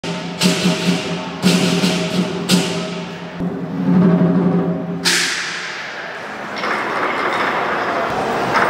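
Lion dance percussion: a big drum beating, with loud cymbal crashes about once a second over the first three seconds and another about five seconds in.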